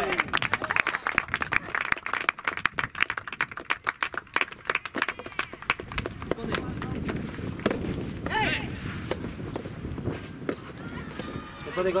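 Shouting voices with a rapid patter of hand clapping for the first few seconds, then a quieter stretch broken by a couple of short shouts, one about two-thirds of the way in and one near the end.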